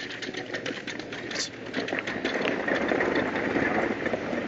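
Street traffic noise: a vehicle engine running with a rapid, dense clatter, starting abruptly.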